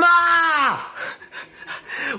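A young man's drawn-out cry of dismay without words, rising and then falling in pitch over most of a second, followed by about five quick breathy puffs.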